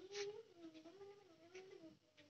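A cat meowing faintly: one long, wavering call that rises and falls in pitch and fades near the end, with a brief rustle just after it begins.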